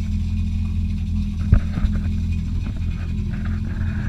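Yamaha FX Cruiser SVHO jet ski's supercharged four-cylinder engine idling steadily on its trailer while being flushed with a hose, with a brief knock about a second and a half in.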